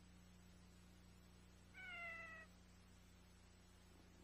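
A single short kitten meow, falling slightly in pitch, about halfway through: the recorded meow of the MTM Enterprises logo kitten. Beneath it is a faint steady low hum.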